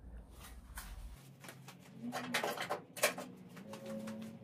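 A quiet room with a scatter of faint clicks and knocks, from someone handling things while fetching a pair of pliers.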